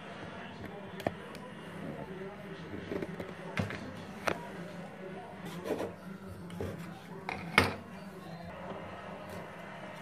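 Light clicks and knocks of small wooden pieces and a fine-toothed hobby saw against a small wooden miter box while corners are cut off a thin strip of craft wood, the loudest knock about three-quarters of the way through, over a steady low hum.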